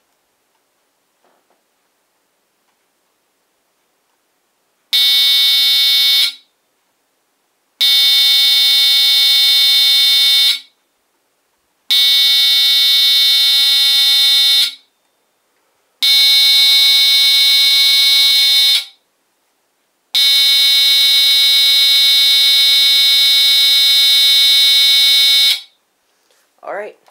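HeathKit Smoke Sentinel 30-77L photoelectric smoke alarm's mechanical horn sounding under the test button. It stays silent for about five seconds while the photoelectric test builds up, then gives a loud, buzzy, steady-pitched tone. The tone comes in pulses of roughly three seconds on and a second and a half off, and ends in one long blast of about five seconds.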